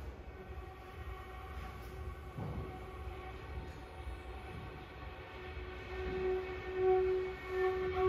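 Soft opening of a contemporary chamber piece: one long, quiet held note with its overtones, swelling louder in the last two seconds.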